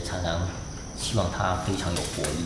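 Insects chirring in a steady high-pitched drone, under a man speaking Mandarin.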